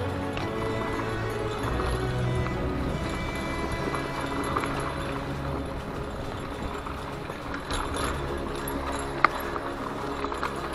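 Instrumental background music with long held tones, over the rattle and crunch of a mountain bike riding a dirt trail. A single sharp click comes about nine seconds in.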